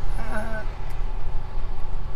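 Steady low rumble of vehicle and road noise heard inside a car cabin.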